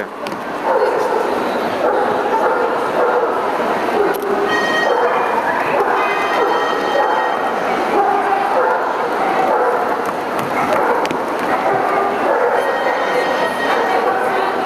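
Steady hubbub of a crowd of people talking, with dogs yipping and barking among it.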